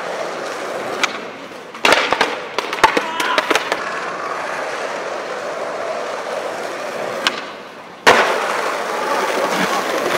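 Skateboard wheels rolling on stone paving, broken by sharp wooden clacks of the board: a loud cluster from about two to three and a half seconds in and another loud clack just after eight seconds.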